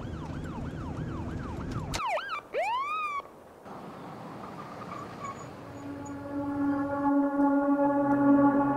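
Police car siren in a fast up-and-down yelp over a low engine rumble, breaking off about two seconds in with a few wide swooping glides. Near the end a sustained synth chord swells in as the song's music begins.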